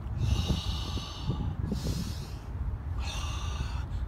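A man taking two deep breaths between exercises, each a long rush of air, the first lasting about a second and a half and the second near the end. A low steady rumble runs underneath.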